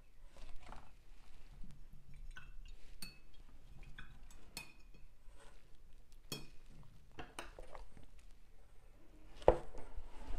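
Paintbrushes clinking and knocking against a water jar and other painting gear, a few light clinks ringing briefly, with a louder knock near the end.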